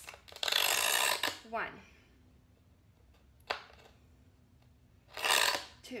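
Diamond scribe drawn along a straight edge across the back of a 1/8-inch mirror: two scratchy strokes, each about a second long and about four seconds apart, scoring the glass through its back coating, with a sharp click between them.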